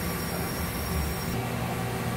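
Steady low hum and rumble of a running CNC mill-turn machine in a machine shop, with a faint high whine that cuts off suddenly near the end.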